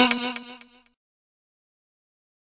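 Violin holding the song's final note, which fades out within the first second.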